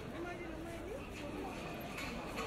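People talking nearby in a crowd, one voice standing out over a steady murmur of many others.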